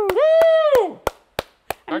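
Hands clapping in a steady rhythm, about three claps a second. A drawn-out, high vocal cry that dips and rises again runs through the first second over the first claps.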